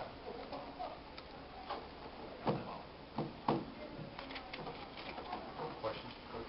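Room tone with scattered small clicks and soft knocks of papers and objects being handled at a table. Three louder knocks come close together in the middle.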